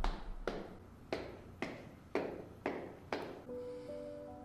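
Chalkboard erasers being clapped together to clean them, a sharp clap about every half second. Soft music with long held notes comes in near the end.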